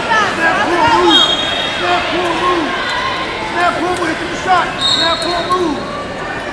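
Short, arching squeaks repeat several times a second, typical of shoes on wrestling mats and gym floor, over a hubbub of voices in a large hall. A brief thin high whistle-like tone sounds twice, about a second in and near the end.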